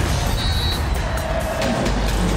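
TV show bumper music layered with a loud, steady rushing and low rumbling sound effect.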